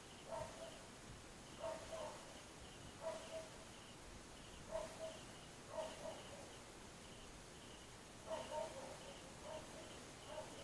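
Faint animal calls in the background: short calls repeating about once a second, over a faint, steady pulsing chirp.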